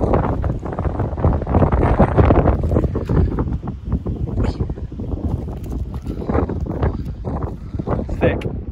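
Wind buffeting a phone's microphone in loud, gusting rumbles.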